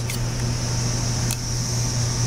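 Steady low mechanical hum with a faint high hiss, broken by two brief clicks about a second apart.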